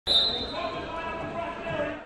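A basketball bouncing on a court amid the voices of a crowd of spectators.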